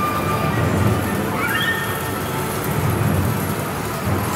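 Japanese medal pusher arcade machine running its jackpot wheel spin: electronic game music and effects over the steady din of a busy game arcade. About a second and a half in there is a short rising electronic chirp.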